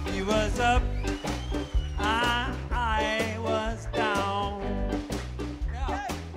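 Live blues band playing an instrumental passage: an electric guitar lead with bent, wavering notes over bass and a steady drum-kit beat.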